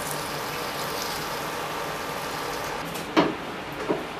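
Onion-tomato masala sizzling steadily in a frying pan as boiled chickpeas are tipped in, followed by two short knocks near the end, likely a wooden spatula hitting the pan.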